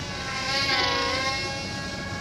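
Small electric RC plane's motor and propeller buzzing in a steady high whine. It grows loudest about halfway through, where the pitch dips briefly and comes back up, then eases off.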